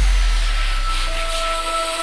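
Electronic dance track in a breakdown: a deep bass note fades away under a few sustained synth tones and a hissing noise sweep.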